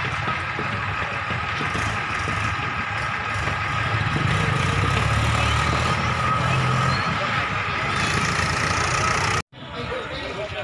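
Steady outdoor ambience: a vehicle engine running, with indistinct voices in the background. The engine's low hum swells for a few seconds in the middle, and all of it cuts off suddenly near the end.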